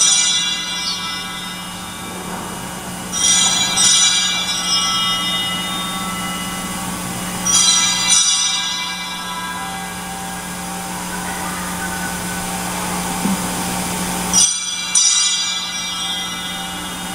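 Altar bells rung at the elevation of the chalice during the consecration. They come in short rings four times (at the start, about three seconds in, about eight seconds in, and near the end), each ringing out and fading, over a steady held low chord.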